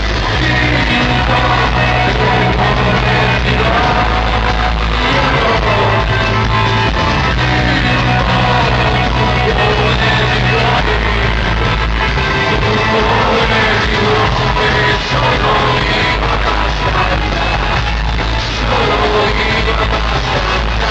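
Live rock band playing loud, electric guitar, drums and singing, heard from within the audience in a large arena.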